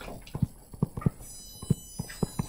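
Stylus tapping and clicking on a touchscreen during handwriting: an irregular run of small, sharp taps, several a second, as each letter is written.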